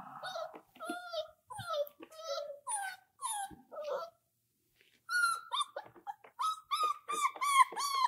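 Five-week-old German Shorthaired Pointer puppies whining in short, high cries. The cries break off about four seconds in, then return as a quicker run of repeated whines.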